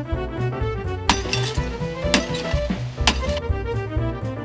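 Jazzy brass music plays while a CRT television's glass picture tube is struck and shatters: three sharp impacts about a second apart, starting about a second in, with breaking glass running on between them.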